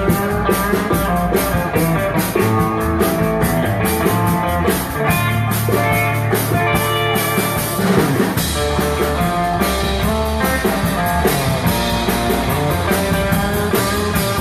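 A live rock band playing a surf-rock instrumental, with electric guitar over a drum kit and no singing. The beat is steady, and a little past halfway the cymbals open into a denser wash.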